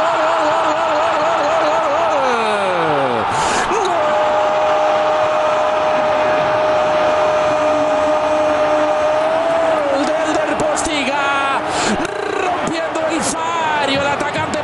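Spanish TV football commentator's long, drawn-out goal shout, held on one note, breaking into a falling glide about three seconds in, then held again for about six seconds over a cheering stadium crowd. Fast excited commentary follows near the end.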